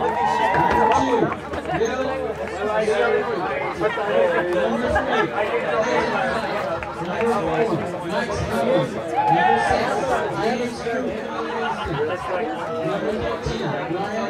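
Many people's voices chattering at once, overlapping and indistinct.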